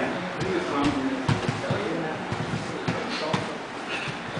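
Indistinct voices of people talking in the room, with a string of dull thumps and scuffles from two grapplers moving on foam mats, clustered from about a second in.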